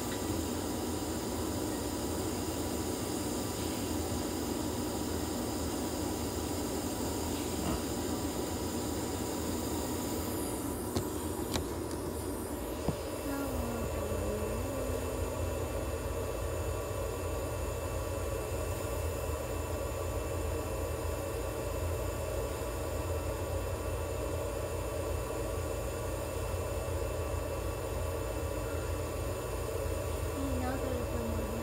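Steady drone and hiss of an animal-care incubator running, used for warming, humidifying and oxygen therapy. A few faint clicks come about eleven to thirteen seconds in.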